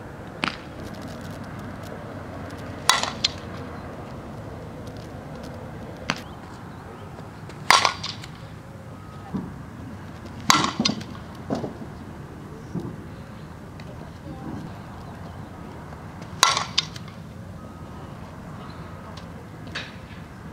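Fastpitch softball bat hitting pitched softballs in batting practice: a sharp metallic ping every few seconds, about seven in all, with a few fainter knocks in between.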